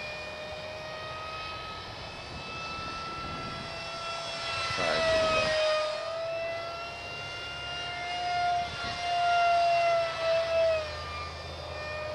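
Electric motor and pusher propeller of a foam RC park jet whining in flight: one steady tone with overtones. It grows louder with a shift in pitch as the plane passes close about five seconds in, and swells again near the end.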